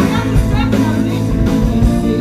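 Live band playing through a PA: electric guitars, bass and drum kit with a horn section of trumpet and saxophones, and a woman singing.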